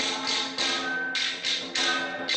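Temple ritual percussion: rhythmic clashing strikes, about two to three a second, each fading briefly, over a steady ringing tone.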